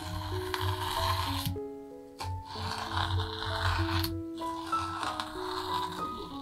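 Masking tape being peeled off the edges of a painted canvas in three long pulls of a second or two each, over soft piano background music.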